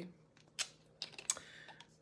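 A few faint clicks and light taps, then a brief soft rustle near the end.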